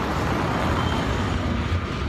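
Steady road traffic noise, with a car driving past close by.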